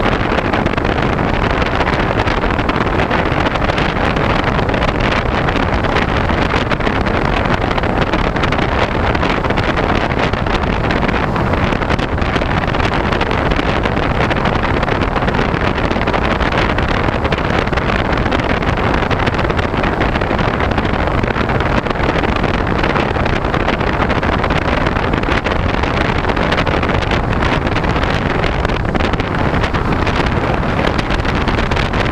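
Steady, loud wind rush over the onboard camera of a Talon FPV fixed-wing plane in cruising flight.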